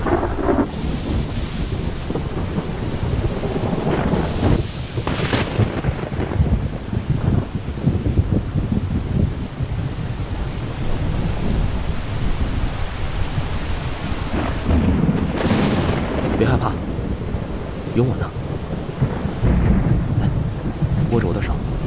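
Thunderstorm: steady rain with low rolling thunder. Sharper thunderclaps come about a second in, around four to five seconds in, and again around fifteen seconds in.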